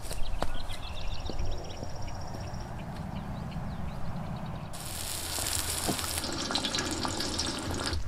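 Birds chirping in woodland over a low outdoor rumble. About five seconds in, a steady sizzling hiss starts abruptly: food frying on a camp griddle.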